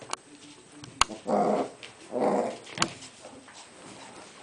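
Cairn terriers play-fighting, with two short growls about a second apart. A sharp click comes just before the first growl, and another follows the second.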